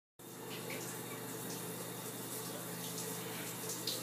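Water running steadily from a tap into a bathtub as it fills.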